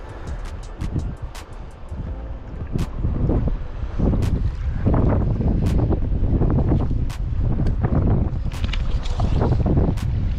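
Wind buffeting the microphone in gusts, a low uneven rumble that grows much stronger about three seconds in, with a few light clicks.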